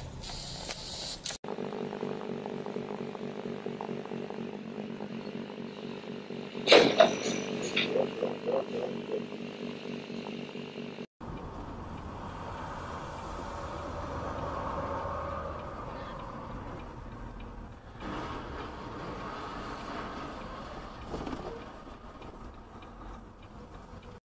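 Driving sounds from dashcam clips: a steady engine drone heard inside a vehicle, with a sudden loud noise about seven seconds in, then an abrupt switch to steady road noise.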